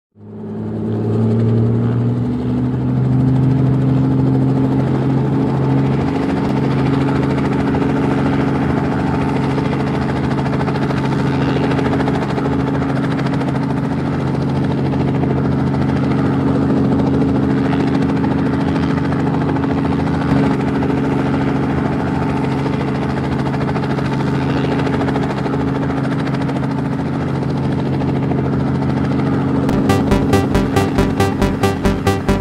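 Quadcopter drone's motors and propellers spinning up, their hum rising in pitch over the first two seconds, then running steadily at an even pitch.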